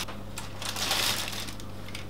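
Faint rustling of baking parchment as the steamed cauliflower halves are opened out, over a steady low hum.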